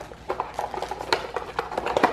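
Playing cards being handled and laid on a granite countertop: a quick, uneven run of light clicks and taps.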